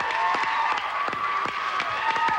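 Studio audience applauding and cheering, with dense clapping under a sustained cheer.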